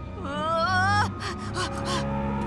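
A boy's frightened, quavering, high-pitched whimper that rises in pitch for about a second, followed by several short gasping breaths.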